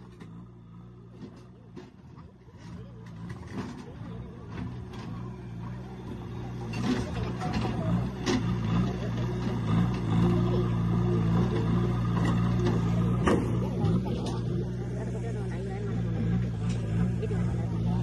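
Diesel engine of a JCB backhoe loader running, a steady low hum that grows louder over the first several seconds and then holds, with voices of a crowd around it.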